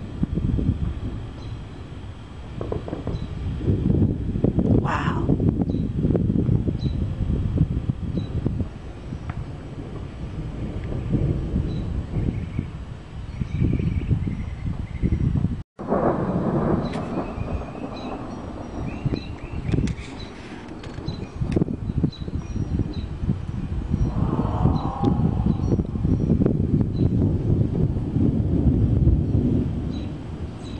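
Thunder rumbling low from a thunderstorm, swelling and fading in long rolls. The sound drops out for a moment about halfway through.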